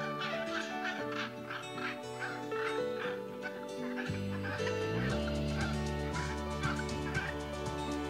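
Rapid series of short, harsh bird calls, about three a second, over background music whose bass line comes in about halfway through.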